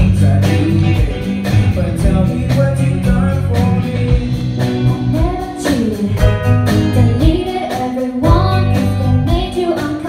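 Live band playing a pop song: a female lead singer over a drum kit keeping a steady beat, electric bass, electric guitar and keyboard.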